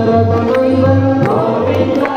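Devotional song music: voices chanting a mantra-like melody over a repeating bass note and a steady percussion beat.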